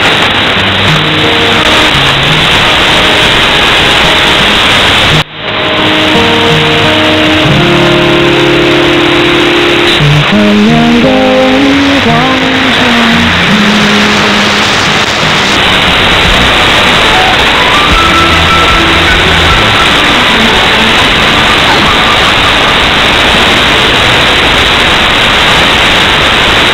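Music from a shortwave AM broadcast, received under heavy static hiss with the sound cut off at the top like an AM filter. The signal drops out briefly and suddenly about five seconds in.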